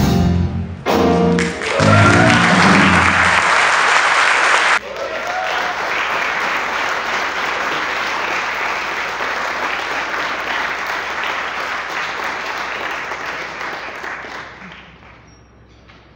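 A live piano, bass and drum group plays its final notes in the first couple of seconds. Then an audience applauds steadily, and the applause dies away near the end.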